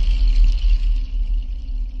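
The closing of a TV channel ident's music: a deep low rumble with a faint high hiss above it, slowly fading.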